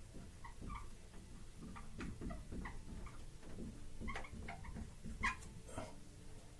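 Dry-erase marker squeaking and ticking faintly on a whiteboard in short, irregular strokes as words are written.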